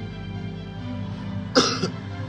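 A person coughs once, short and loud, near the end, over a rap song playing in the background.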